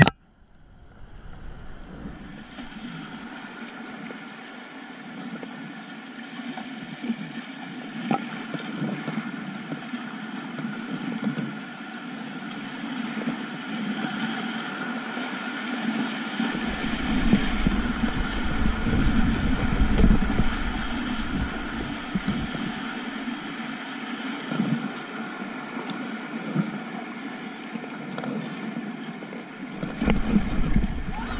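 River water rushing and splashing around a whitewater kayak, picked up by a body-mounted action camera. It gets louder with a low rumble in the middle as the boat runs through a rapid, then eases off again.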